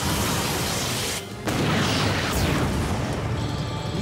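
Cartoon sound effect of a gadget's blast of wind: a rushing whoosh with a low rumble that drops out briefly a little over a second in, then resumes, over background music.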